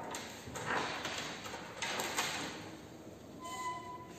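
Connecting wires and terminals being handled, giving a few short rustling, scraping bursts, with a faint brief tone near the end.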